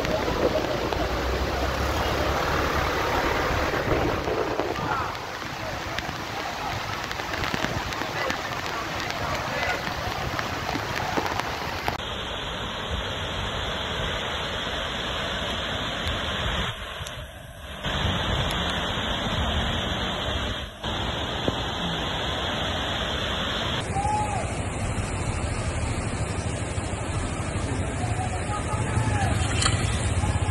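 Floodwater rushing through a street in a steady noisy rush, with rain and indistinct voices of onlookers. The sound changes character abruptly about twelve and twenty-four seconds in.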